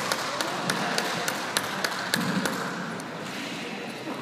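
Scattered light taps on a hardwood handball court with low voices, the sounds echoing between the court's walls.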